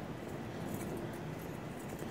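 Steady low background noise in a covered concrete parking garage, with a few faint light ticks.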